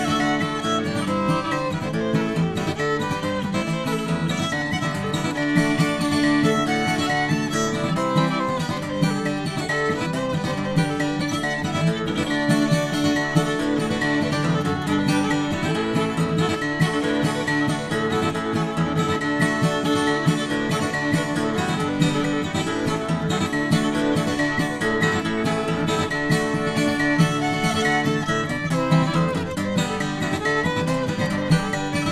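Fiddle and acoustic guitar playing an instrumental old-time fiddle tune together, the fiddle carrying the melody over the guitar's picked and strummed rhythm backing.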